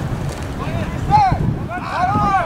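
Wind buffeting the microphone in a steady low rumble. Distant voices shout on the field about a second in and again near the end.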